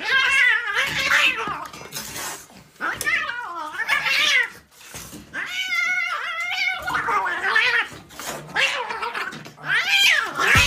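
Kitten yowling and growling in a string of wavering calls, each a second or less, while it wrestles and bites at a person's foot in play-fighting.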